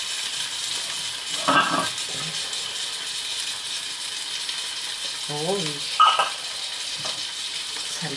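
Meat frying in a pan, sizzling with a steady hiss. Two brief clinks come through, about a second and a half in and again about six seconds in.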